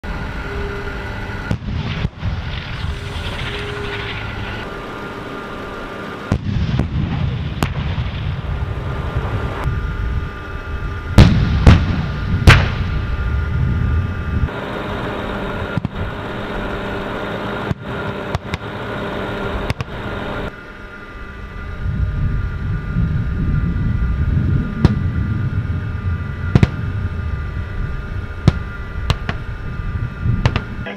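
Tank cannon shots and shell explosions on a live-fire range, a dozen or so single blasts at irregular spacing, the loudest three coming close together a little before halfway. Between them runs the steady rumble and high whine of armored vehicle engines.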